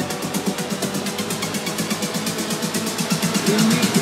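Melodic techno in a breakdown with no kick drum: fast, even hi-hat ticks over a pulsing synth bass line.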